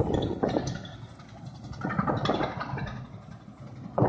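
Tesmec TRS1675 trencher at work, its engine running under load as the cutter digs through the ground, the level rising and falling.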